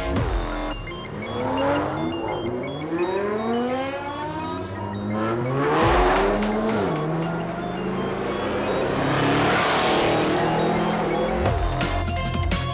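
Car engines revving up, their pitch rising in several sweeps one after another, with rushing whoosh effects about halfway through and again near the end. Music comes back in just before the end.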